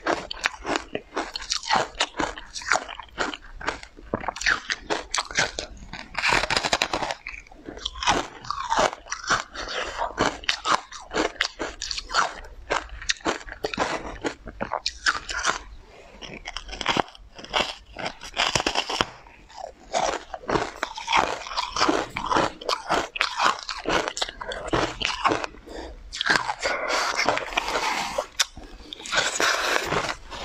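Close-miked eating sounds: a person biting into and chewing a soft pink dessert coated in green powder. There are many wet mouth clicks and short bursts of chewing, thickest in the last few seconds.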